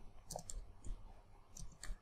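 Faint, irregular clicks of computer keyboard keys being typed: a handful of separate keystrokes.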